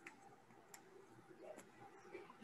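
Near silence: room tone with a few faint, isolated clicks about a second apart.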